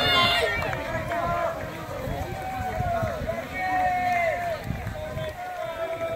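Many voices shouting and cheering, some in drawn-out calls, as a big pack of cross-country runners streams past on grass, with the footfalls of the crowd of runners underneath.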